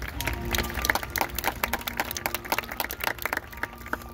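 Marching band playing: a rapid, irregular run of sharp percussive hits over faint held notes. The hits stop abruptly just before the end.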